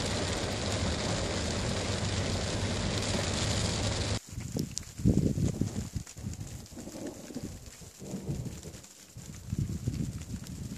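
Heavy rain hitting a car's windscreen and roof, heard from inside the car, with a steady low hum underneath. About four seconds in it cuts off abruptly, and wind buffets the microphone outdoors in irregular low gusts.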